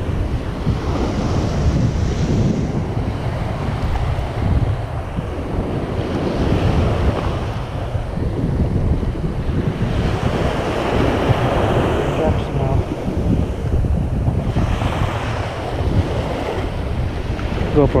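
Small surf breaking and washing up a sandy beach, swelling and fading with each wave, under heavy wind buffeting on the microphone.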